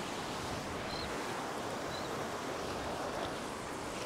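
Surf washing over shallow sand: a steady rush of small breaking waves and foam.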